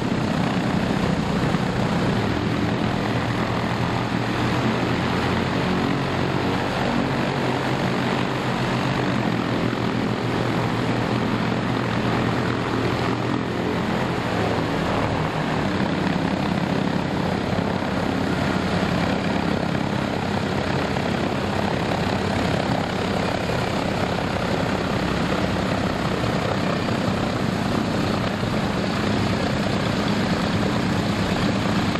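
A Douglas Dakota's two Pratt & Whitney R-1830 Twin Wasp radial engines idling steadily on the ground, propellers turning.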